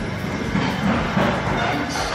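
Steady, rapid mechanical rattling and rumbling from building work going on nearby, the noise of workers hitting something.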